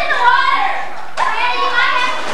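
Young girls' voices calling out and chattering over one another, high-pitched, with a short break about a second in.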